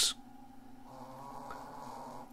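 Faint buzzing static from a KiwiSDR software-defined shortwave receiver's audio output, with a few steady tones in it, growing slightly about a second in.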